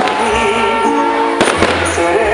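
Music with held, wavering melody notes plays throughout. About one and a half seconds in, fireworks on a burning castle-shaped firework frame give a quick cluster of two or three sharp bangs.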